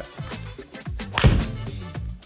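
A golf club strikes a ball off a hitting mat: one sharp crack about a second in, over background music.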